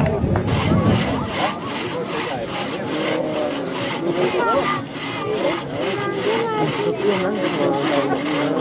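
Two-man crosscut saws cutting through logs by hand, a rhythmic rasp of push-pull strokes at about three a second, starting about half a second in.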